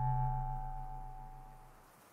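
A held musical chord from the film score, with a low tone and higher ringing tones, fading away over about two seconds.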